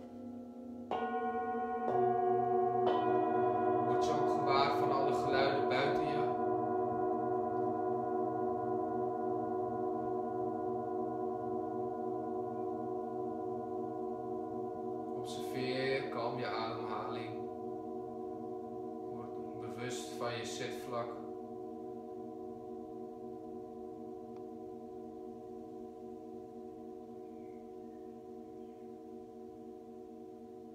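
Brass singing bowls struck with a mallet three times, about a second apart, each adding its own pitch. Together they ring on in a long, slowly fading chord.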